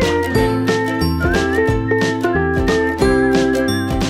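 Background music with a steady beat and a high melody line.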